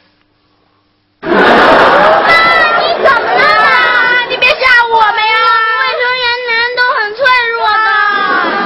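Several children's voices wailing and crying out together in overlapping, drawn-out cries. The cries begin about a second in with a loud, sudden rush, after a brief silence.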